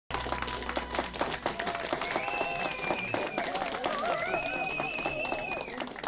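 Audience applauding with dense, steady clapping, with voices cheering over it.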